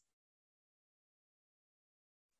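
Silence: a dead-quiet gap with no sound at all.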